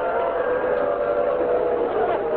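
Voices in a mourning lament, wailing and chanting in long, drawn-out held tones without clear words.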